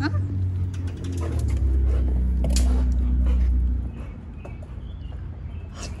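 Low rumble of a dog's fur brushing and pressing against the phone's microphone. It is loudest in the middle and stops about four seconds in.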